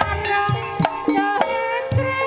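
Banyumasan gamelan music: deep kendang hand-drum strokes and sharp struck notes under a singer's wavering, ornamented vocal line and held pitched tones.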